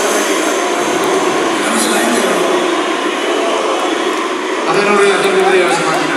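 Dense crowd noise in a large hall: many indistinct voices shouting and cheering, getting a little louder about five seconds in.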